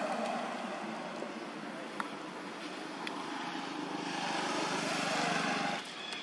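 Steady motor-vehicle traffic noise, swelling near the end and cutting off abruptly just before it, with a faint sharp click about two seconds in.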